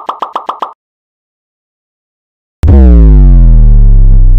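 A quick run of short pop sound effects, about seven a second, stopping under a second in; then silence, then, past halfway, a very loud deep bass-drop effect that falls in pitch and holds.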